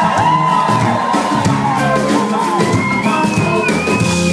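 Amplified live band playing an instrumental passage, with steady bass notes and high gliding tones on top, while the crowd cheers.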